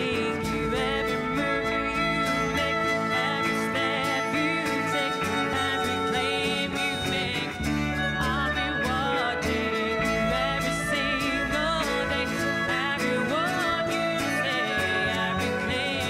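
Live acoustic ensemble music: a woman singing with vibrato over violin, double bass and acoustic guitars, with an EyeHarp, a digital instrument played by eye movement, in the ensemble. The bass moves to a new note every couple of seconds under sustained melody tones.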